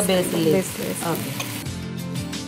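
Chicken fried rice sizzling in a hot pan as it is stirred and turned with a spatula. Background music comes in near the end.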